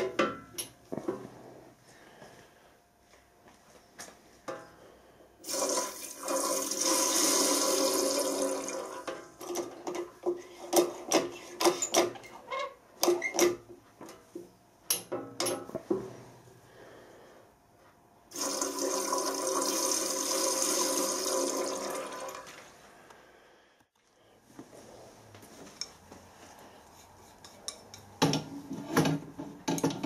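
Water rushing through a hand-operated pressure-gauge test pump in two bursts of about four seconds each, with small metal clicks and knocks in between.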